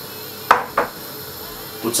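Glass bottle lifted off a kitchen counter: a sharp clink about half a second in, then a second, softer knock.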